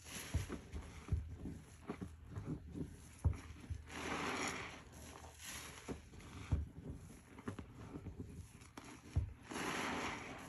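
A soaked foam sponge squeezed and wrung by hand in a sink of soapy, sudsy water: repeated wet squelches and sloshes, with two longer gushes of water, about four seconds in and near the end.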